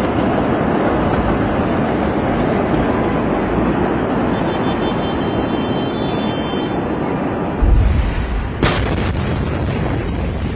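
A steady rushing roar, then late on a deep boom of a distant large explosion, followed about a second later by a sharp crack: the blast wave of the 2020 Beirut port explosion reaching the street.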